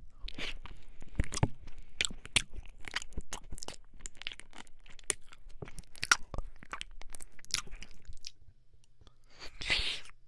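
Wet mouth sounds right against the ear of a 3Dio FS binaural microphone: ASMR ear licking and nibbling, a run of irregular sharp, moist clicks. The clicks thin out near the end, followed by a short breathy burst.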